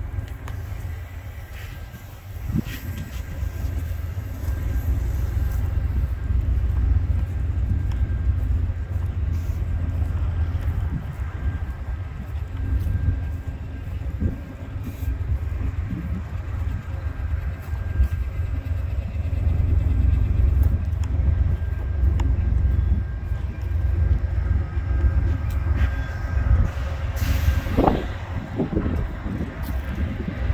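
Amtrak passenger train rolling past at close range: a steady low rumble of steel wheels on the rails, with occasional clacks and a brief burst of noise near the end.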